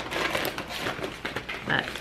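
Clear plastic zip-top bag crinkling and rustling in the hands as it is opened and filled with Brussels sprouts, a sharp click right at the start followed by faint, irregular crackles.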